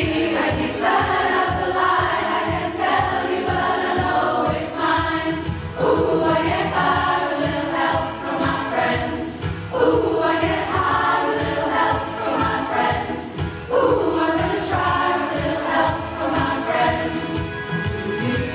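A large community rock choir singing a song in harmony, many voices together over a steady low beat. New phrases come in strongly every few seconds.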